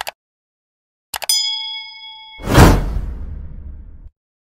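Subscribe-button animation sound effects: a quick double mouse click, then a couple of clicks and a bell-like ding that rings for about a second, then a loud whoosh that fades away.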